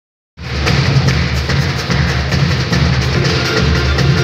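Live samba band playing a steady beat on surdo bass drum and snare-type drum with acoustic guitar, starting abruptly a moment in.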